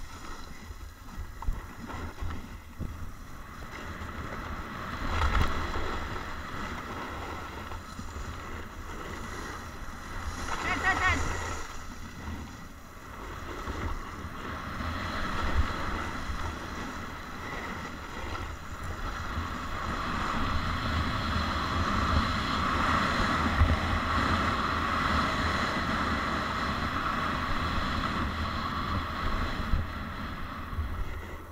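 Snowboard sliding and carving down a groomed slope, its base and edges scraping over the snow in swells, with wind rushing over the camera's microphone. The scrape is louder and steadier in the last third.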